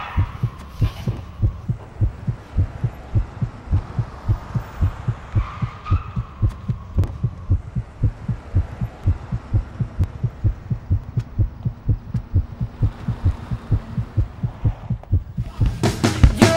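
Heartbeat sound effect of a suspense trailer: low, evenly spaced thumps, about two to three a second, over a faint low hum.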